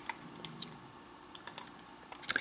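A few faint computer keyboard key clicks, a couple early and a quick cluster about a second and a half in, as a number is entered and confirmed in a dialog box.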